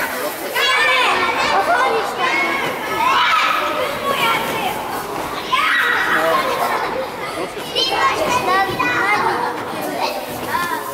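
Many young children shouting and calling out over one another as they play indoor soccer, their high voices echoing in a gymnasium hall.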